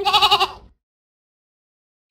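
A goat bleating once: a single wavering bleat that ends under a second in.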